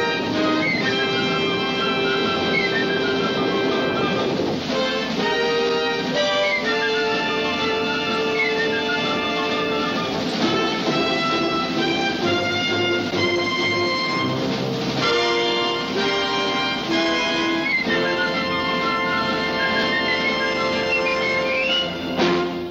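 Orchestral TV theme music led by brass, with held chords and several runs of high notes falling in pitch.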